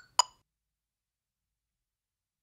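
One sharp electronic metronome click just after the start, the last of a fast, even click track, then dead silence.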